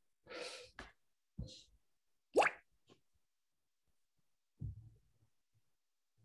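A man's soft breathy exhale as a laugh trails off, then a short rising voice sound a little over two seconds in, with quiet gaps between.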